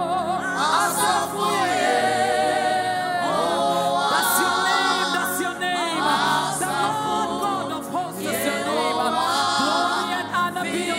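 A woman singing a worship song into a microphone, with long held notes that slide and waver in pitch.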